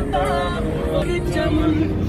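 A song with singing trails off in the first second, over a car's steady engine hum heard from inside the cabin. The hum stands out more plainly in the second half.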